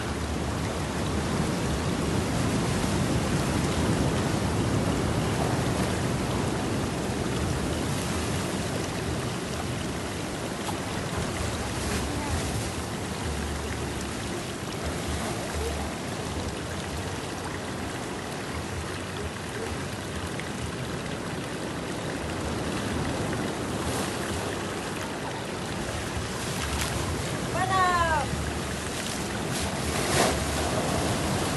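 Ocean surf washing and breaking against rocky shore in a continuous rushing wash. Near the end there is a short call that falls in pitch.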